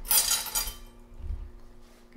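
A brief scraping rustle of kitchen handling on a granite countertop as a cloth pot holder is set down and a fork is picked up, followed by a soft low bump about a second later.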